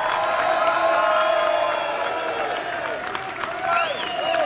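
A large crowd cheering and whooping, many voices at once, with scattered clapping.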